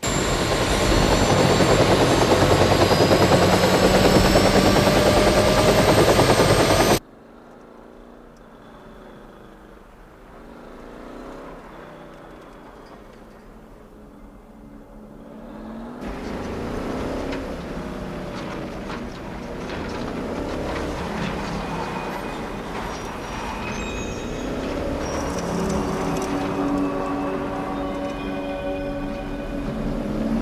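Helicopter running loud with a rising whine, cutting off abruptly about seven seconds in. After a quieter stretch, a car engine runs from about halfway, heard from inside the car.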